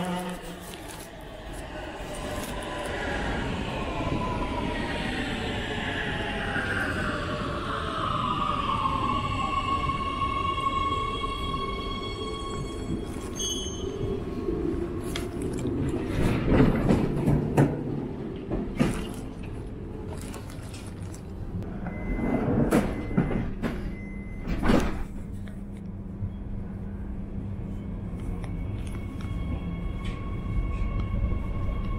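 Oslo Metro train pulling into an underground station: the whine of its electric traction drive falls in pitch as it brakes to a stop. After the stop come clicks and a burst of clatter as the doors open and people board, short repeated beeps as the doors close, and a new whine setting in near the end as the train starts to move off.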